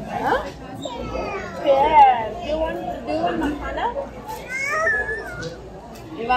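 A young child's high voice babbling and vocalizing without words, over the background chatter of a busy dining hall.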